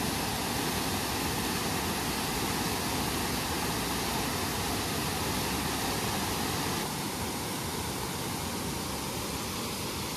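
Waterfall cascading down rock ledges: a steady rush of falling water, slightly quieter from about seven seconds in.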